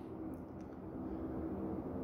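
Quiet background with a faint steady low hum.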